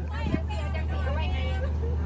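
Background voices talking faintly over a steady low hum, with one brief knock shortly after the start.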